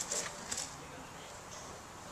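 Two brief scratches of a pointed tool marking the surface of a clay tube, one near the start and one about half a second in, over faint room hiss.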